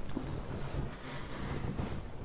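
A low steady hum over a faint, even rushing background noise, with no clear event.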